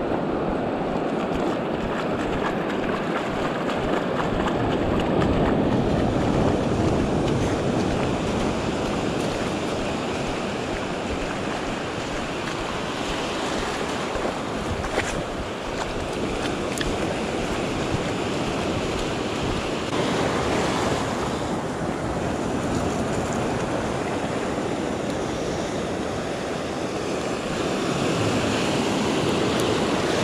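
Ocean surf breaking and washing through the shallows, a steady rushing wash that swells and eases, with wind buffeting the microphone.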